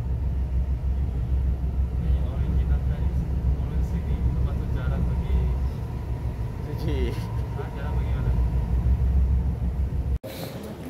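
Inside an MRT Putrajaya Line train carriage while the train runs between stations: a steady low rumble with a faint thin whine above it, easing a little in the middle.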